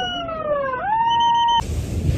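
Siren wailing in a slow cycle: its pitch sinks gradually, then sweeps quickly back up, about a second in. It cuts off suddenly near the end, giving way to the steady rush of wind and surf.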